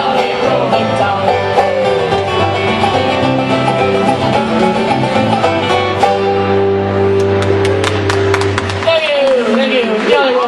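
Irish pub band playing the last instrumental bars of a folk song, ending on a held chord about nine seconds in. Clapping starts near the end and voices come in as the music stops.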